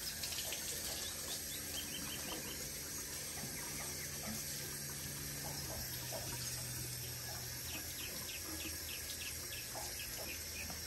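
Kitchen faucet running into a stainless steel sink while hands wash a wet puppy under the stream, a steady splashing rush of water. Twice, a quick run of short high chirps sounds over the water.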